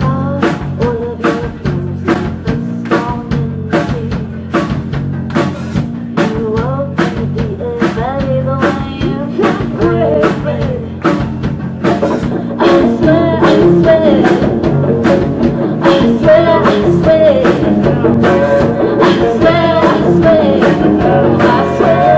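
Live rock band playing: a woman singing lead over electric guitar, bass guitar and drum kit, with a steady beat. The band gets louder about halfway through.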